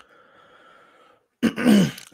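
A man clears his throat once, loud and short, near the end, with a click and a faint hiss before it.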